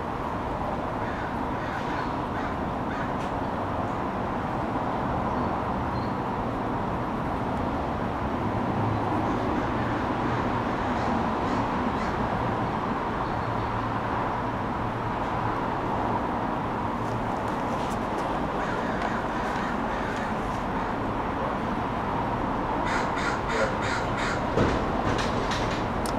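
Crows cawing over steady outdoor background noise, the calls coming thickest near the end.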